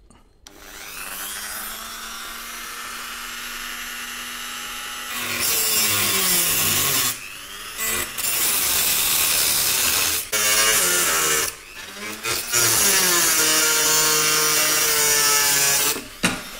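Dremel rotary tool with an abrasive cutoff wheel, run at low speed, spinning up and then cutting through thin brass sheet from about five seconds in. The grinding of the disc on the metal is loud, and the motor's pitch wavers under load. There are three short breaks as the cut is eased off and resumed.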